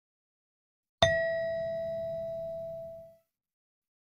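A single chime struck once about a second in, ringing with one clear pitch and fading away over about two seconds: the signal that ends the answer pause and leads into the next question of the listening test.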